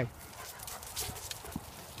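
Faint footsteps crunching on dry grass and fallen leaves, a few light scattered clicks and rustles.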